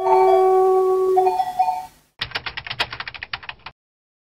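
A held tone of a few steady notes that steps up in pitch about a second in, then rapid mechanical clicking, about a dozen clicks a second for a second and a half, that stops abruptly.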